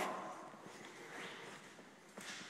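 Quiet room tone with only faint, indistinct sounds.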